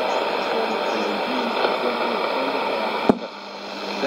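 Sony ICF-2001D shortwave receiver with a weak broadcast voice half-buried in static hiss on 12005 kHz. About three seconds in there is a sharp click and the hiss drops as the set is switched to 11660 kHz.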